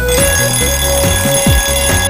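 Alarm-clock-style bell ringing steadily over electronic dance music with a kick-drum beat.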